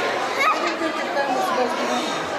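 Indistinct chatter of many people, children among them, talking at once, with one high voice rising briefly about half a second in.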